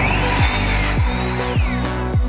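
A Ryobi miter saw running with a rising whine as the blade comes down through a pallet-wood board; the cut is loudest about half a second in, and the whine falls away near the end. Electronic music with a steady thumping beat plays underneath.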